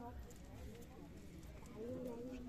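Faint background voices of people talking, over a low, uneven rumble.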